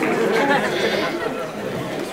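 Crowd of dinner guests chattering, many voices at once, dying down after about a second.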